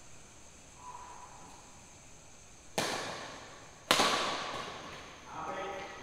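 Two sharp cracks of badminton rackets striking the shuttlecock about a second apart, the second louder, each ringing on in the hall's echo.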